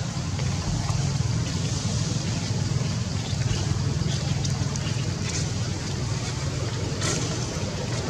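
Steady outdoor background noise: a continuous low rumble under a broad hiss, with a few faint light ticks.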